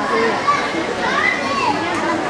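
Overlapping chatter of many high voices in a sports hall, with one voice calling out in a rising and falling tone about a second in.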